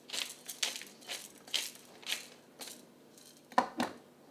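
Hand-twisted spice mill grinding: a series of short crunching turns, about two a second. Near the end, two sharper knocks, the loudest sounds, as of a hard object set down on the counter or bowl.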